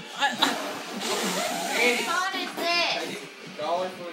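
A breathy rush of air blown onto the phone's microphone for about a second and a half, then men's voices exclaiming with pitch sliding up and down.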